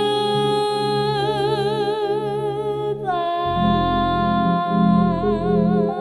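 A woman singing long held notes with a wide vibrato, accompanied by piano chords. About halfway through she moves to a new note, and deeper piano bass notes come in just after.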